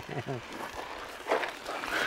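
A man laughing in a quick run of short falling 'ha' sounds that dies away about half a second in, followed by quieter outdoor background.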